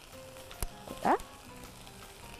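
Faint sizzling of vegetables sautéing in oil in a frying pan, with a soft click about half a second in and a short rising squeak around the middle.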